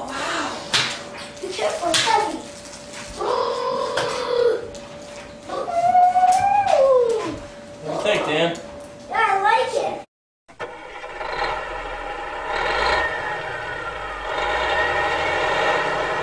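Children's voices calling and squealing without clear words, over a faint steady tone. About ten seconds in the sound cuts out briefly, and a steady droning hum of several tones follows.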